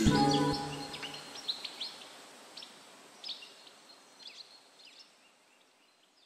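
The song's last held notes die away in the first second, leaving a few short, high, bird-like chirps over a soft hiss that fade out to silence about five seconds in.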